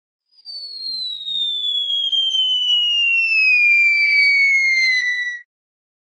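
Cartoon falling-bomb whistle sound effect: one long whistle that starts about half a second in, glides steadily down in pitch for about five seconds and cuts off suddenly near the end.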